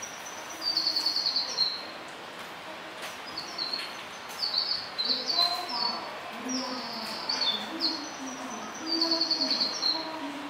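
Small birds chirping in quick high trills that step down in pitch, in bursts every few seconds. Faint distant voices run underneath.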